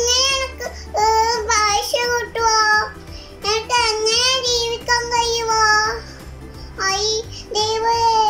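A young girl singing a song in Malayalam in a high voice, in several phrases with long held notes and short breaks between them, over a low steady hum.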